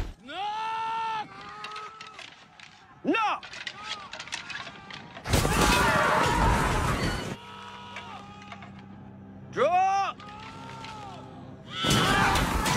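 Battle scene from a film soundtrack during a cavalry charge: several high, gliding cries near the start, about three seconds in and again near the end, and a loud two-second burst of crashing noise about five seconds in as the horses collide. A low steady drone sits under the second half.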